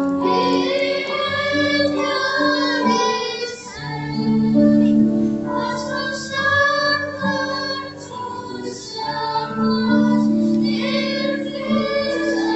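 A group of children singing a Christmas song over held instrumental accompaniment notes.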